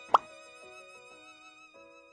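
Soft background music with gently held notes, cut by a single short, rising 'plop' sound effect just after the start.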